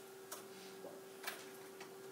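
A few faint, light taps of a stylus writing on an iPad's glass screen, spread across the two seconds, over a faint steady hum.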